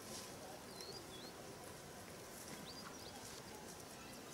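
Faint outdoor background noise with a few short bird chirps, one about a second in and another near three seconds.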